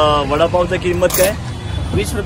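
Conversational speech over a steady low rumble of street traffic, with a short high hiss about a second in.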